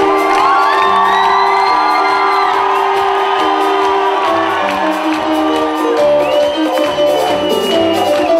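Live band music on stage: keyboards and drums with a steady bass line, and long high held notes sounding twice over it, once near the start and again near the end.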